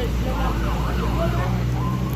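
An electronic vehicle siren wailing in fast up-and-down sweeps over the steady low rumble of an engine.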